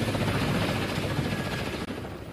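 Large helicopter idling on the ground after landing, a steady rapid rotor chop over engine noise that fades slowly near the end.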